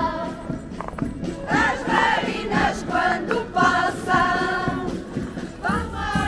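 A Portuguese rusga folk group singing a traditional song together, several voices in unison on held notes.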